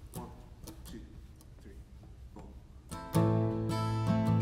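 Quiet room sound with a few faint clicks, then about three seconds in an acoustic guitar starts strumming chords, opening a hymn.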